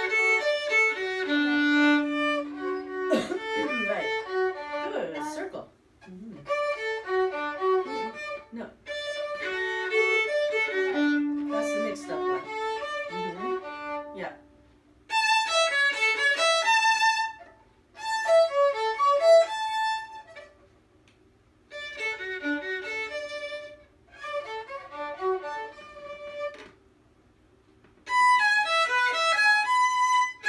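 Two violins playing a duet in short phrases, stopping briefly and starting again several times. A low note is held under the melody twice in the first half.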